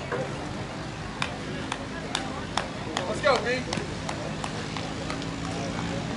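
Voices of players on the softball field, with one loud call about three seconds in, over a steady low hum. A scattering of sharp clicks runs through the middle of the stretch.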